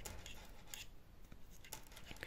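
Faint clicks and light scraping of metal knitting needles working yarn as stitches are knitted by hand, a few scattered ticks.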